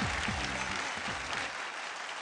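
Studio audience applauding, with background music under it that fades out within the first second; the applause slowly dies down.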